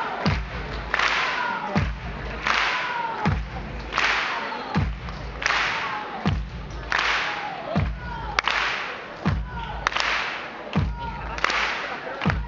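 Live concert music over the PA: an electronic beat with a deep kick drum dropping in pitch about every three-quarters of a second, each kick paired with a sharp snapping hit, and short synth tones sliding downward.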